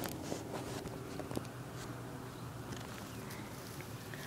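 Faint rustling of dry grass being handled, with a few scattered light clicks.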